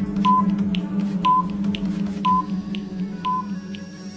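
Quiz countdown timer sound effect: four short high beeps, one a second, with faint ticks between them, over steady background music.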